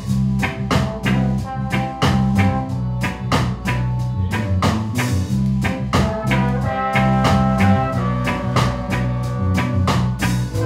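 Soul band playing together: a drum kit keeps a steady beat under bass and electric guitar, with held horn notes coming in over the top in the second half.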